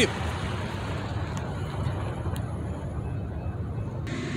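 Steady low rumble of road traffic from the street, with no distinct events.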